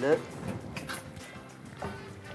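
A wooden spoon stirring chicken and fried vegetables in a pot, with a few short scrapes about half a second and a second in, over background music.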